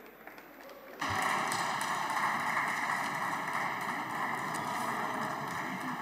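Applause from the deputies' benches in a parliamentary chamber, starting about a second in and holding steady as the speech ends.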